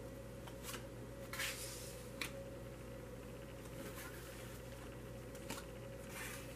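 Tarot cards being drawn and laid down on a cloth-covered table: a few short swishes and soft taps, the longest swish about a second and a half in. A steady low hum runs underneath.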